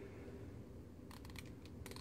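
Aperture ring of a Canon FD 50mm f/1.8 lens being turned by hand, a quick run of light clicks from just over a second in as it steps through its aperture stops.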